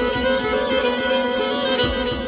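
Solo violin playing Persian classical music in dastgah Shur: a single bowed melodic line with small ornamental wavers in pitch.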